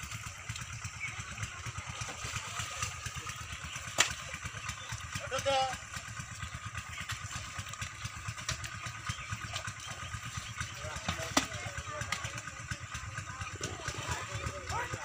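Steady low rumble throughout, with distant voices calling now and then. One voice is briefly louder about five seconds in, and two sharp knocks stand out, one early and one late.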